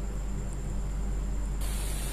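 A pressure cooker's weight valve begins to vent steam with a sudden steady high hiss about one and a half seconds in. Pressure has built up to the first whistle. Before that there is only faint steady background noise.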